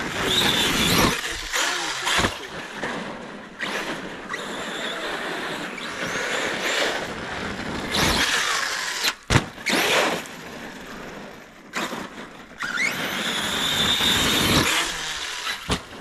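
Arrma Kraton 6S electric RC truck being driven hard on ice and snow: its brushless motor whines, rising and falling in pitch as it speeds up and slows, over a steady rush of tyre noise. A couple of sharp knocks, about two seconds in and again past the middle, come from the truck hitting the ground.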